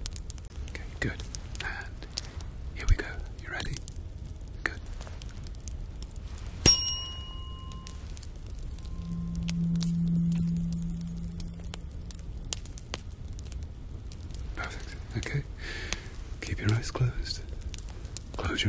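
A tuning fork struck once, ringing with a clear high tone that fades over a second or two. A few seconds later a low steady hum swells and dies away, with soft rustles and clicks around it.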